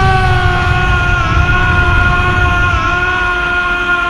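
Broly's anime transformation scream: one long male yell held on a single high pitch with a slight waver, over a deep rumbling power-up energy effect.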